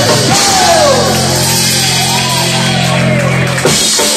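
Live rock and roll band with saxophone, keyboard and drums holding the song's final chord, with falling melodic runs over the top. The chord stops near the end with one last hit.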